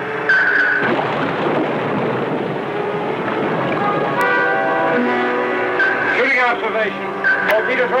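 Dramatic orchestral film score holding sustained chords over a steady rushing noise, with brief voices near the end.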